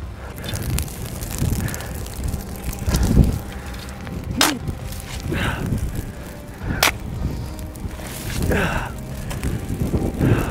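Shovels scraping into and flinging gravelly dirt to smother a grass fire, over a low rumble of wind on the microphone. Two sharp knocks stand out, about four and a half and seven seconds in.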